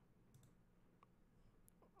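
Near silence with a couple of faint, brief computer mouse clicks.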